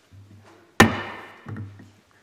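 A single sharp knock on a hard surface about a second in, ringing briefly as it dies away, then a softer thud, over a low electrical hum from the sound system.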